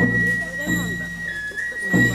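A high, steady whistle-like tone held on one pitch, dipping briefly lower about halfway through, over a low droning chant of voices that breaks off and starts again twice, as ritual music at a Shinto fire-burning ceremony.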